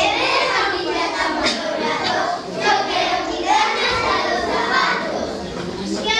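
Many young children talking at once, an overlapping chatter of voices.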